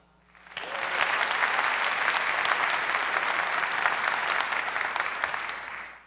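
Audience applauding at the close of a talk: the clapping starts about half a second in, swells within a second to a steady full applause, and tapers off near the end.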